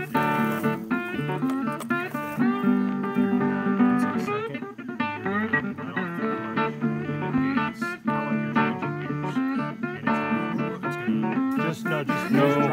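Background music with guitar, playing a steady run of plucked notes.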